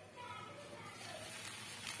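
Faint sizzling of sem fali (flat bean) and potato sabzi cooking in a kadai as its steel lid is lifted off, with faint voices in the background.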